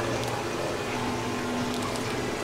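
Steady hum and hiss of aquarium pumps and water filtration, with faint unchanging tones in it.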